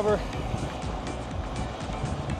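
Background music over a steady rush of wind and road noise while riding at speed.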